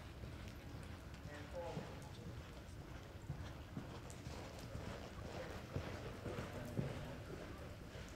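Hoofbeats of a horse loping on arena dirt, faint and soft, with a few sharper knocks in the second half.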